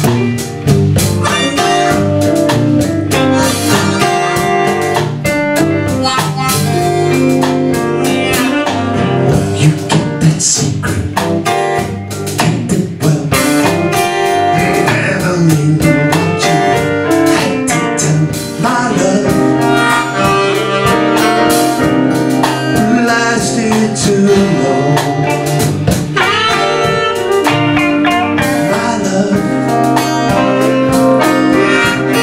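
Live blues band playing a song in G minor: guitars, bass and drum kit with saxophone and harmonica.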